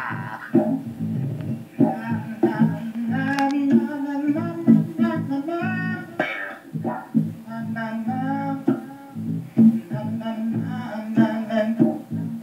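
Live electric guitar playing over a steady low bass line, with scattered sharp percussive hits.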